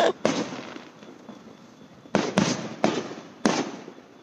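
Fireworks going off: a sharp bang just after the start, then after a quieter second a run of four bangs between about two and three and a half seconds in, each trailing off in echo.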